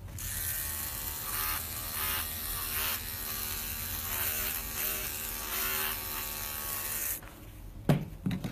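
Electric dog-grooming clippers fitted with a #40 blade running while cutting through a tight felted mat around a Shih Tzu's foot, getting louder and softer in waves as the blade works through the mat. The clippers stop about seven seconds in, followed by a sharp click.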